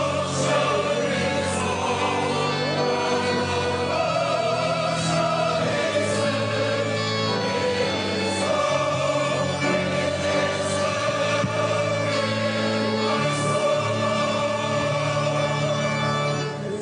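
A choir singing a hymn, many voices together on long held notes.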